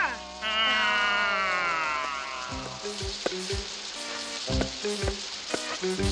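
Cartoon soundtrack: a long descending whistle-like glide over a steady hiss, then underscore music punctuated by sharp low drum hits about three a second.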